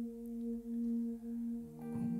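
Soft keyboard pad holding one steady note with a gentle pulsing swell. New lower and higher notes join near the end as the chord changes.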